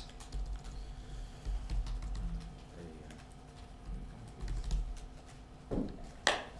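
Typing on a computer keyboard: scattered, irregular key clicks, fairly faint, over a steady low hum.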